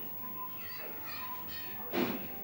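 Children's voices and chatter in the background, with a brief loud clatter of dishes in the sink near the end.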